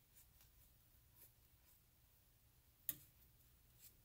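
Near silence: room tone, with one faint sharp click just before three seconds in.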